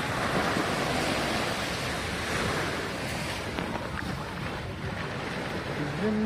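Small waves breaking and washing up on a sandy beach, a steady rushing surf, with wind on the microphone.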